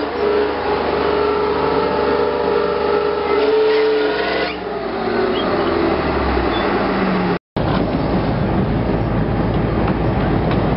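A tracked tank driving past, its engine running with a steady whine over the noise of its tracks. About seven and a half seconds in, the sound cuts out for a moment and gives way to a steady low rumbling noise.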